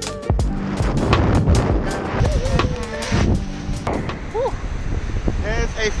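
Strong wind rushing over an action camera's microphone, with the rush of water from a kiteboard planing through shallow water. Background music cuts out just after the start.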